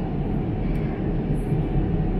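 Steady cabin noise of an Airbus A350 airliner in flight: a constant low rumble of engines and airflow heard from inside the passenger cabin.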